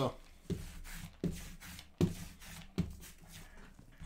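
A sticky lint roller rolled over a fabric card-breaking mat to pick up small scraps, in about five strokes. Each stroke starts sharply and trails off.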